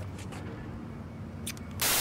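Faint steady low hum, then a short, loud burst of hiss near the end.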